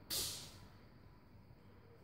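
A brief hissing swish, lasting about half a second, as a recurve bow is drawn with an arrow on it, followed by faint room tone.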